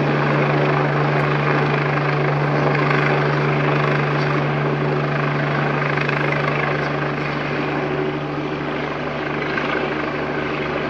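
Police helicopter passing overhead: a steady drone of rotor and engine with a strong low hum, getting a little fainter over the second half as it moves away.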